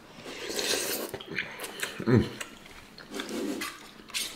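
Close-miked eating sounds: a mouthful of chicken noodle soup noodles being chewed and slurped, with a short, falling "mm" hum about two seconds in and another brief voice sound a little after three seconds.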